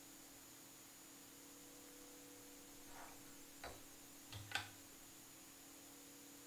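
Near silence: faint steady electrical hum, with three faint taps in the second half.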